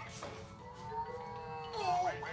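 Electronic tone from a toddler's plastic push-along learning walker, switched on and lit. One faint, drawn-out high note starts a little after the beginning and drops in pitch near the end.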